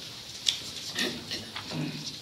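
A sharp click, then brief low voice sounds from people in the room.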